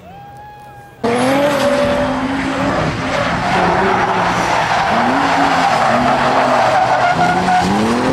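Drift cars sliding sideways: high-revving engines rising and falling in pitch over a continuous screech of tyres. Fainter for the first second, then loud and close from about a second in.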